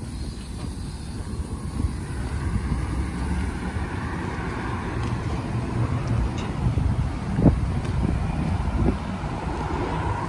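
City street traffic passing, with wind rumbling on the microphone. An engine's sound swells through the middle and end, and a few short low thumps come near the end.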